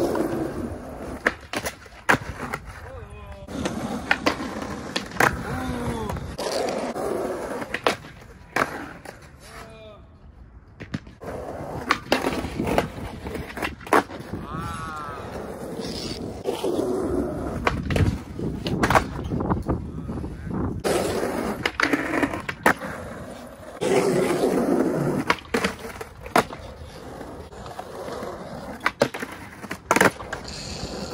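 Skateboard wheels rolling on concrete pavement, broken again and again by sharp clacks of tricks: tail pops, the board hitting concrete, and landings.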